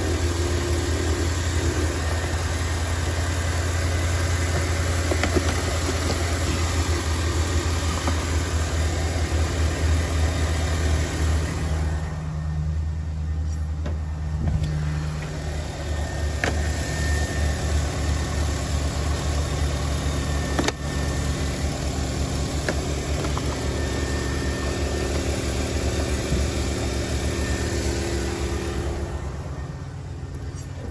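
Mercedes-Benz engine idling steadily. It runs smoothly after a fuel injector replacement: the cylinder 3 misfire that made it shake is gone.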